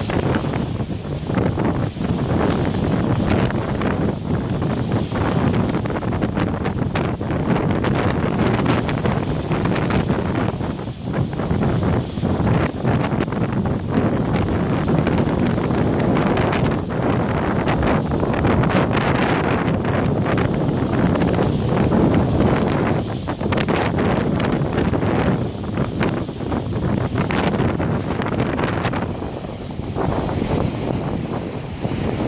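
Heavy storm surf breaking over rock breakwaters and a shingle beach, a loud, continuous rush that swells and eases, with strong wind buffeting the microphone.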